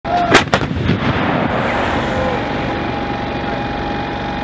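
Self-propelled howitzer firing: a sharp blast with a second crack a fraction of a second later, then a long rolling rumble of echoes that slowly fades. A steady high hum runs underneath.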